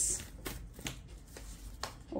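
Tarot cards being handled: drawn off the deck and set down on the table, giving a handful of short, soft card clicks and slaps spread across two seconds.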